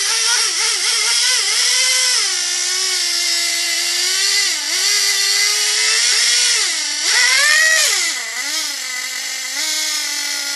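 Traxxas Jato 3.3's small two-stroke nitro engine, running on 40% nitromethane fuel, revving in repeated throttle blips while the truck is held in place, with one sharp high rev about seven seconds in before it drops back to a lower, steadier note.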